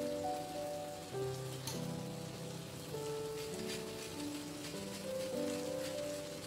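Solo piano background music holding slow, sustained notes, over a faint crackling hiss from shrimp frying in a hot wok.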